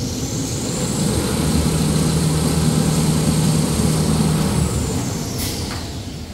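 Toilet paper and kitchen towel production line running, its machinery giving a high whine over a low hum. The whine climbs in pitch at the start, holds steady, then falls away near the end, with a short sharp click shortly before the end.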